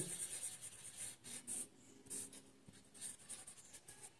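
Blue felt-tip marker scribbling on paper in quick, irregular strokes as it colours in a circle; faint.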